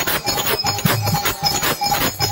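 Kirtan accompaniment with no singing: percussion keeps a fast, steady beat of jangling metal strikes, about four a second, with low drum thuds and a faint held harmonium note.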